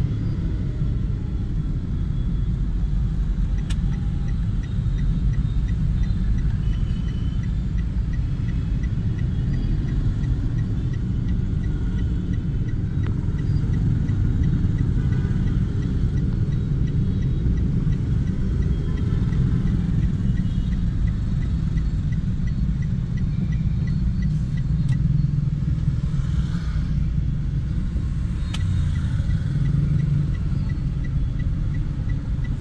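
Steady low rumble of a car's engine and road noise heard from inside the cabin in slow city traffic, with a faint, evenly repeated ticking through most of it.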